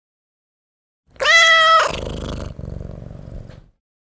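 A domestic cat's single loud meow, held at a steady pitch, followed by about two seconds of low purring that stops short.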